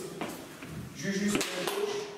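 A man talking in a small, echoing room, with a couple of short clicks.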